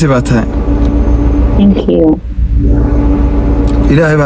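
Steady low rumble of a car, heard inside its cabin through a phone's microphone, with a steady hum above it. A voice is heard briefly at the start and again about halfway through.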